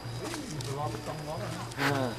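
People's voices talking, in short phrases, with the loudest one just before the end, over a steady low hum and a faint steady high-pitched tone.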